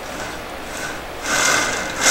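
Plastic filament spool set down onto the Kingroon KP3's roller spool base and rolling on the rollers: a short scraping, rolling noise starting a little past halfway.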